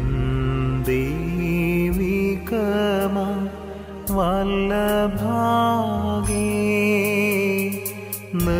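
A single voice singing a slow, melismatic devotional hymn with wavering, held notes over a steady low drone accompaniment, with short pauses between phrases.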